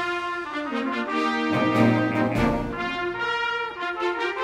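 High school concert band of brass, saxophones, clarinets and flutes with bass and drums, playing held chords that change about once a second, with the low brass coming in about a second and a half in. The full band is mixed from separately recorded parts.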